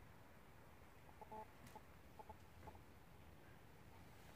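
Faint clucking of a chicken: a handful of short calls in the middle, over near-silent room tone.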